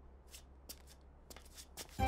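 Near silence: quiet room tone with a few faint, brief rustles or ticks.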